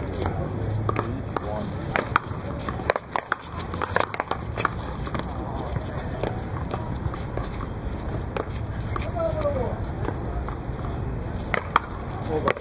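Paddleball play: sharp knocks of a rubber ball struck by paddles and rebounding off the concrete wall and court. The knocks come in a quick cluster a couple of seconds in and again near the end, over a steady low background rumble.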